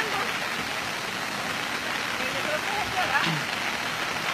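Steady hiss of rain falling, with faint voices in the background.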